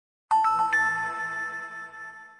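Wondershare logo chime: three bell-like notes rising in pitch in quick succession, then ringing on and fading away.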